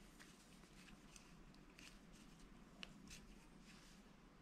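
Near silence, with faint rustles and small clicks of a braided cord being pulled tight into a knot around a carabiner.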